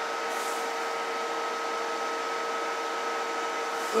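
Steady background hum and hiss from the radio test bench, with two faint steady tones and no other events.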